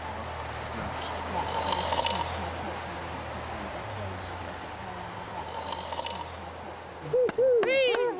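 A sleeping man snoring slowly, two drawn-out breaths about four seconds apart, over a steady low hum. A voice comes in near the end.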